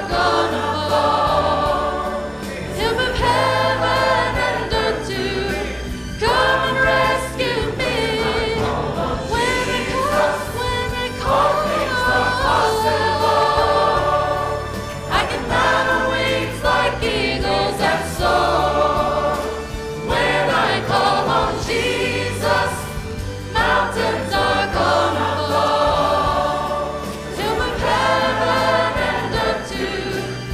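A female soloist singing a gospel song into a handheld microphone, with a choir and instrumental accompaniment carrying a steady bass line behind her.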